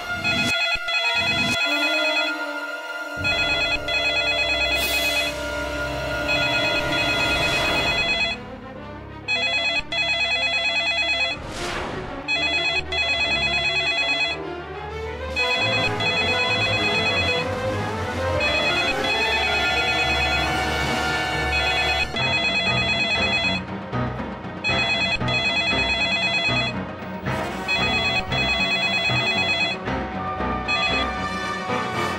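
A landline telephone's electronic ringer trilling in repeated bursts of about two seconds with short gaps, over dramatic background music.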